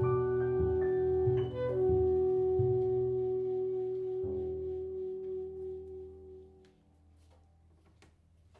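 Jazz quartet of saxophone, piano, double bass and drums ending a ballad: a long held note sounds over low bass notes and piano chords. A final chord about four seconds in rings out and fades away by about seven seconds.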